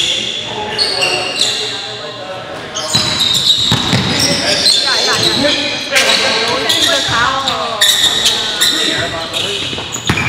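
Live game sound in a reverberant gymnasium: sneakers squeaking on the hardwood court, a basketball bouncing, and players' indistinct voices echoing in the hall.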